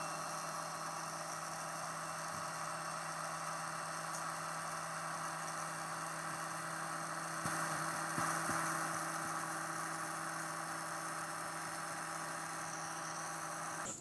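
Surgical power drill running with a steady whir as it drills a screw hole through the plate into bone, slightly louder for about a second around the middle.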